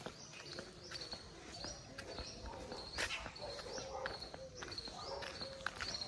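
Footsteps on a concrete lane, with a bird close by repeating a short, high, rising call about twice a second.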